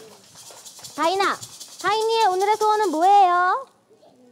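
Applause, a dense patter of clapping, with a high voice calling out in drawn-out, sliding exclamations about a second in and again over the next second and a half. Both stop shortly before the end.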